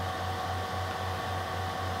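Steady background noise of the recording: a low, slightly pulsing hum with a faint hiss and a few faint steady tones above it, like a fan or electrical hum in a small room.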